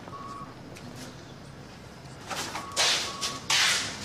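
Paper swishes from the pages of a large bound ledger being turned quickly: quiet at first, then several swishes from about two and a half seconds in, the loudest near the end. A faint pair of short electronic beeps sounds at the start and again about three seconds in.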